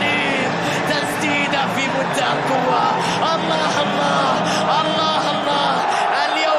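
Stadium crowd of football fans, many voices chanting and singing together over a steady din.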